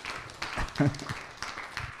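Audience applauding, dense and uneven clapping, with a short voice briefly heard just under a second in.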